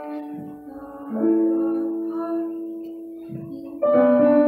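Slow live music on a Roland keyboard and violin, long held chords that change about a second in and again near the end.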